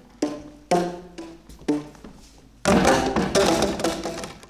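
Tuned hollow tubes struck by hand, each hit sounding a short pitched note that rings briefly: three separate notes, then a dense, louder flurry of many overlapping strikes near the end.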